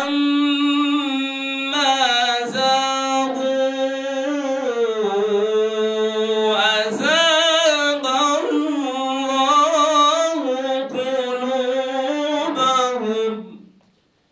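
A solo male voice chanting unaccompanied in the style of Quran recitation (tilawah). It opens on a long held note, then moves through drawn-out ornamented phrases with short breaths between them, and stops near the end.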